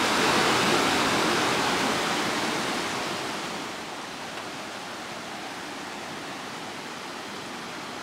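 Mountain stream rushing and splashing over rocks, a steady hiss of water, loudest in the first couple of seconds and then easing to a lower, even rush.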